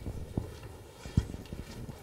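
Footsteps and a few irregular dull thumps, the loudest just over a second in.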